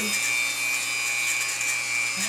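Dremel rotary tool running with a steady high whine, grinding down a great horned owl's talon.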